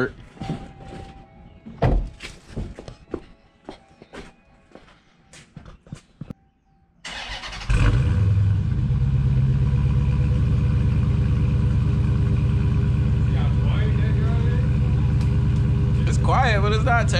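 Stock 2021 Dodge Challenger Scat Pack's 392 (6.4-litre) HEMI V8 on its factory exhaust, warm-started about seven and a half seconds in with a sudden loud flare and then settling into a steady idle. Scattered clicks and knocks come before the start.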